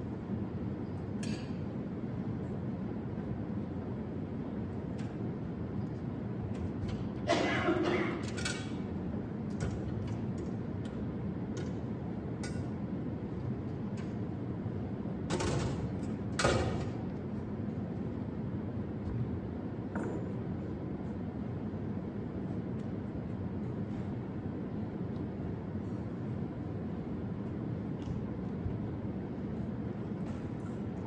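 Metal and glass altar vessels clinking and knocking as they are handled, in two short bursts about a quarter and half of the way through, over a steady low room hum.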